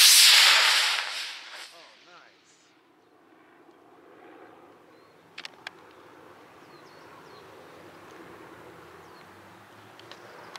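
Model rocket motor burning at lift-off: a loud rushing hiss that fades away within about two seconds as the rocket climbs. Faint outdoor background follows, with two faint clicks about five and a half seconds in.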